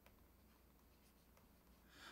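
Near silence, with a few faint scratches and taps of a stylus writing a word on a tablet screen.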